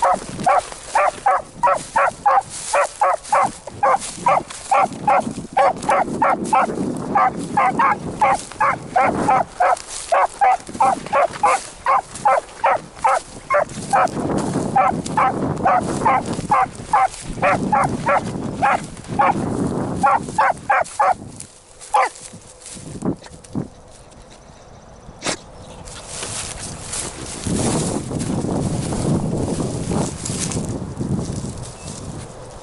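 A single beagle baying in short, rapid barks, about three a second, as it runs a rabbit's scent trail. The barking stops about two-thirds of the way through, leaving wind and brush noise.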